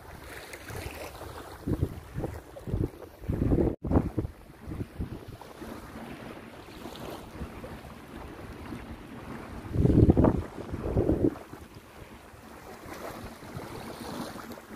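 Wind buffeting the microphone in irregular low gusts, the strongest about ten seconds in, over a steady wash of small waves on the shore.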